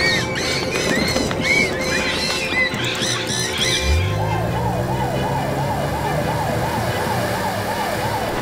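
A flurry of quick, high bird-like chirps fills the first three and a half seconds. About four seconds in, a cartoon fire engine's engine starts up with a low rising hum and holds steady. Its siren then wails in fast rises and falls, about four a second.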